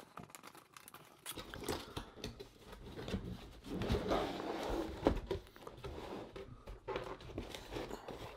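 Cardboard laptop box being opened by hand: scattered clicks and scrapes of the cardboard, with a longer rustle of cardboard sliding against cardboard about four seconds in.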